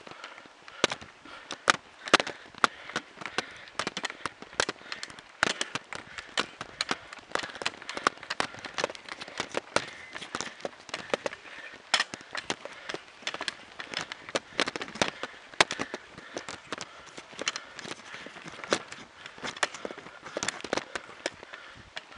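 Irregular sharp clicks and crackles, several a second, over a faint hiss: rattle and handling noise from a camera carried on a bicycle being ridden uphill.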